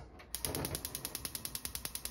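Gas stove burner's electric igniter clicking rapidly, about ten clicks a second, as the knob is held to light the burner under a pot.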